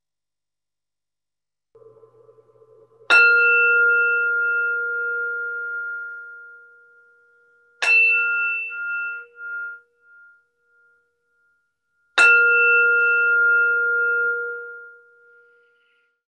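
Meditation bell struck three times, about four to five seconds apart, each stroke ringing on and slowly fading: the bell that closes the meditation.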